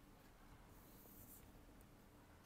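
Near silence, with a faint, short rustle of a sheet of paper being handled on a table about a second in.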